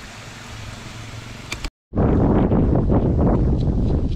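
Chips deep-frying in a pan of hot oil with a steady sizzle. After a brief cut-out a little under two seconds in, loud wind buffets the microphone.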